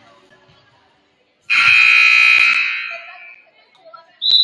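Gym scoreboard buzzer sounding one loud, steady blast about a second and a half in, holding for over a second before fading, as the scoreboard clock runs out to zero.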